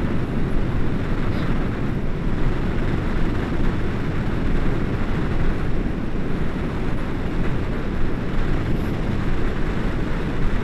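Wind from a tandem paraglider's flight buffeting the camera's microphone: a steady low rumble of wind noise.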